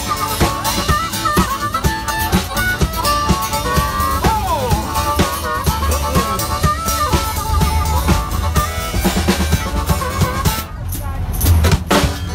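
Live band's instrumental break: a harmonica played into a handheld microphone carries a bending melody with a falling slide, over a steady drum beat. The music thins briefly near the end before the band comes back in.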